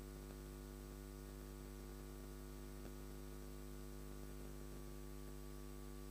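Faint, steady electrical mains hum in the sound system's feed: a low buzz with a stack of even overtones. A single faint click comes a little before the middle.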